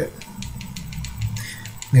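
A run of small quick clicks, several a second, from the arrow buttons of a Finis Tempo Trainer Pro being pressed to step its setting.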